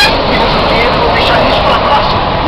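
Steady rumble inside a bus with indistinct voices of passengers over it.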